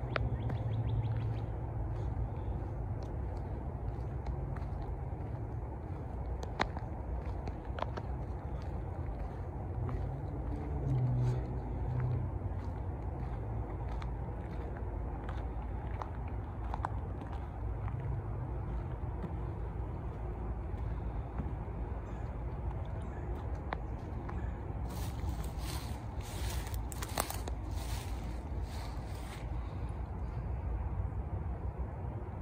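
Outdoor woodland ambience: a steady low rumble with a few short, faint chirps scattered through it. Near the end comes a few seconds of crisp rustling.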